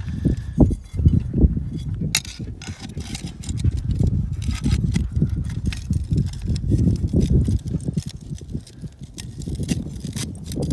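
Light metallic clicks and clinks of a cable ferrule and stake against a metal spade anchor plate as they are handled and threaded together, over a steady low rumble.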